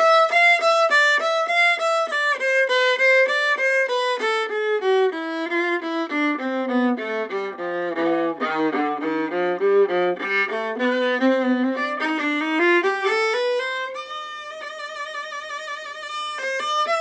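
A bowed string instrument plays an exercise of short, separately bowed notes, about four a second. The line steps down to its lowest range about halfway through, climbs back up, and settles into a longer note with vibrato near the end.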